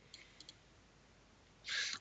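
A few faint computer-mouse clicks in the first half second, then a short breath drawn in just before speech resumes.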